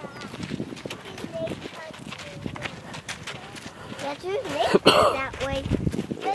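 Young children's high-pitched voices babbling and calling out without clear words, loudest about five seconds in, over light footsteps on a dirt trail.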